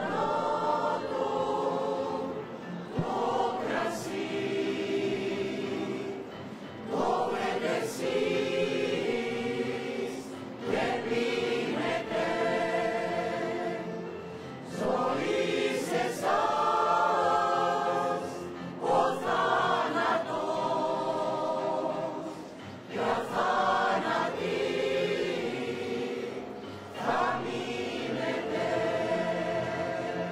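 A women's choir singing, in sung phrases of a few seconds each with brief breaks between them.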